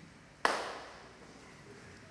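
A single sharp knock close to the microphone about half a second in, followed by a short echoing tail, then quiet room tone.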